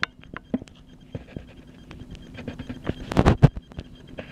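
Scattered small clicks and knocks, with a louder cluster of knocks a little after three seconds in.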